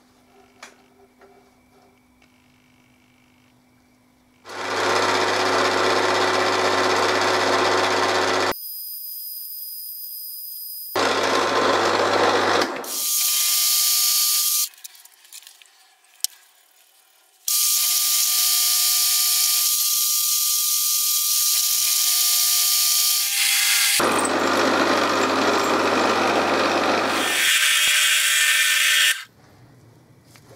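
Milling machine spindle running and drilling holes in a metal disc. The noise comes in several loud stretches, with a steady motor whine in some of them and short quieter gaps between.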